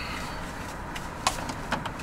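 A few light plastic clicks as a stiff power cable plug is worked loose from a small black power adapter, over a steady low background rumble.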